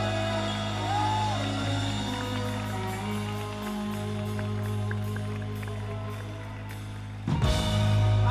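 Live rock band playing a slow, held passage: a pedal steel guitar slides up in pitch about a second in, over a steady low bass note and light cymbal ticks. Near the end the sound turns suddenly louder as the crowd cheers.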